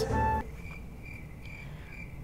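Cricket-chirp sound effect, a short high chirp repeated about three times a second, used as the comedy 'nothing happens' gag: the cube-solving machine does not respond. A louder sound with a held tone cuts off about half a second in, just before the chirping starts.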